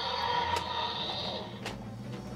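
Mattel Destroy N Devour Indominus Rex toy working its button-driven lunge action feature: a sustained mechanical sound from the toy that stops about a second and a half in, with a couple of sharp plastic clicks.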